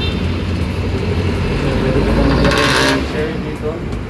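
Road traffic from a busy multi-lane street below, a steady low rumble of passing cars, with one louder vehicle sweeping past about two and a half seconds in.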